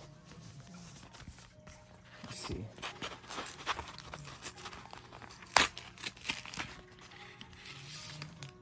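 Plastic blister packaging of a trading-card blister pack crinkling and crackling as the cut-open blister is worked apart by hand, with one sharp plastic crack about five and a half seconds in, the loudest sound.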